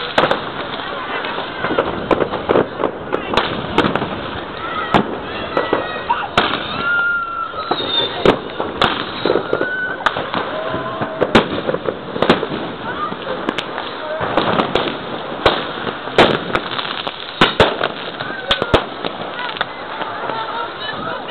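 New Year's Eve fireworks and firecrackers going off all around: a continuous barrage of sharp bangs and crackles, often several a second.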